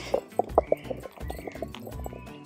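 A hand-turned stone grinder being worked: a stone pestle knocking and grinding against its stone basin in a string of short, irregular knocks, over background music.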